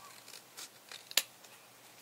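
Scissors snipping through cardstock to trim off its corners: several short, crisp snips, the loudest just over a second in.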